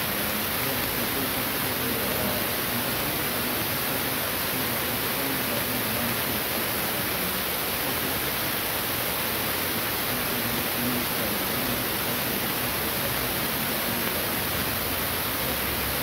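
A steady, even hiss that does not change.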